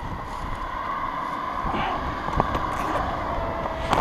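Wind buffeting the microphone over a steady background hum, with two sharp clicks as a banner is tied onto a chain-link fence, the second near the end.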